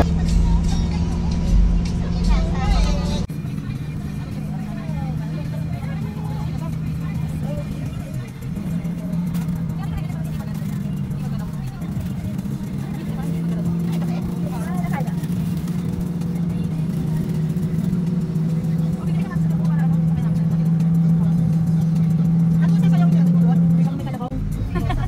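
Background music that cuts off about three seconds in, then the steady low drone of a vehicle's engine and road noise heard from inside the moving cabin, growing a little louder toward the end.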